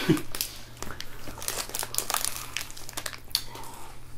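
Plastic candy wrapper being handled and crinkled, an irregular run of quick crackles.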